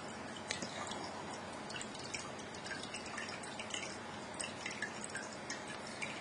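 Quiet room tone: a steady low hiss with scattered faint, irregular clicks and ticks.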